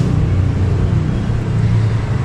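A steady, loud, low mechanical hum with a few held low tones.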